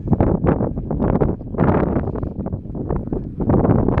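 Wind buffeting the microphone of a handheld camera in loud, irregular gusts.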